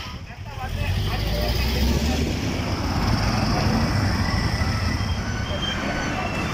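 Road vehicle engines running steadily with a low rumble, mixed with faint voices.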